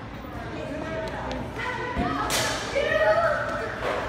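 Echoing chatter of children's voices in a large indoor hall, with a thump about two seconds in, then a loud, high-pitched child's shout lasting about a second.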